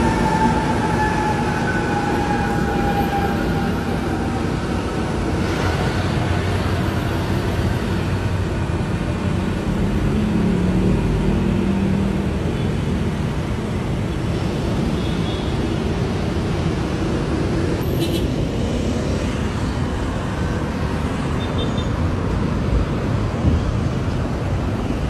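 Steady rumble of trains and road traffic. A faint whine falls slowly in pitch over the first few seconds.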